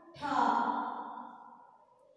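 A woman's voice drawing out a single syllable. It starts sharply about a quarter second in and fades away over a second or so.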